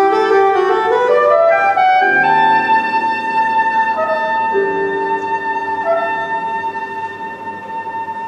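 Soprano saxophone playing a quick rising run of notes, then holding one long high note, over grand piano chords in a free jazz improvisation.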